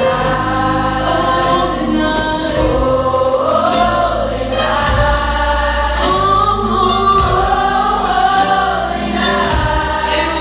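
Youth gospel choir singing a Christmas song, with a boy soloist's amplified voice on a handheld microphone, over sustained low accompaniment notes.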